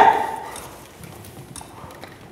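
A shouted line breaks off and its echo dies away in the hall within about half a second. Then come faint, scattered footsteps on the wooden stage floor.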